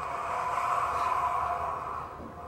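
A coffee maker running in the background: a steady whirring hiss with a faint hum in it, swelling through the middle and easing off near the end.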